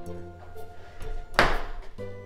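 A louvered closet door pulled open, giving one loud knock about halfway through that fades quickly, over steady background music.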